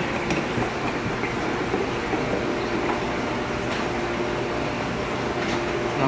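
Steady mechanical hum of the aquarium room's running equipment, with a few faint clicks from a plastic bulkhead fitting being screwed in by hand.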